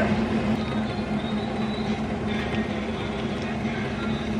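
Kitchen range hood extractor fan running with a steady low hum, over faint cooking noise from the stove as fried chicken is tipped from a pan into a pot.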